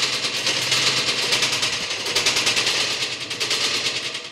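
A fast, even rattle of sharp clicks, about a dozen a second, like machine-gun fire, over a low steady hum; it dies away at the end.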